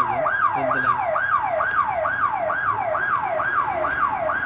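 Electronic alarm siren sounding a fast, even wail that sweeps up and down about two and a half times a second.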